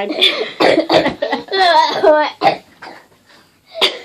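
Girls laughing in short, breathy bursts after a spoken "never mind", dying away near the end.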